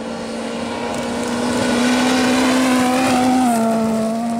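Rally car on a gravel stage approaching flat out, its engine holding a high, steady note and growing louder, then dropping in pitch about three and a half seconds in as it passes.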